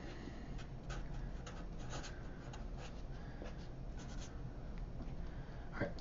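Felt-tip Sharpie marker writing on paper: a run of short, faint scratchy strokes as a word is written out.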